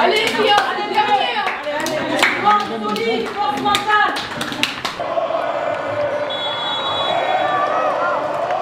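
Hand claps and high-five slaps in a locker room over excited, overlapping shouting voices. About five seconds in, this cuts off abruptly to the steady hum of a stadium crowd.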